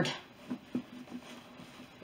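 Mostly quiet handling of a leather bag, with faint rubbing from a damp cloth and a couple of soft ticks in the first second.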